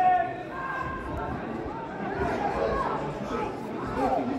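Several voices calling out and chattering, with one loud drawn-out shout right at the start.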